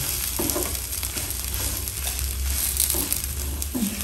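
A crumbly mixture frying in a nonstick pan, sizzling steadily while a silicone spatula stirs and scrapes through it.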